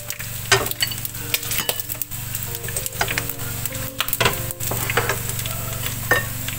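Chicken feet deep-frying in hot oil, with a steady sizzle. Chopsticks click irregularly against the nonstick wok as the golden-fried feet are lifted out of the oil.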